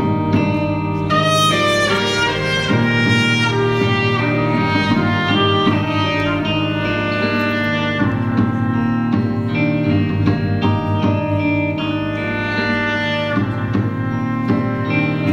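Live indie rock band playing an instrumental passage: clean, interlocking electric guitars over bass and drums. A sustained, horn-like melody line comes in about a second in, over the guitars.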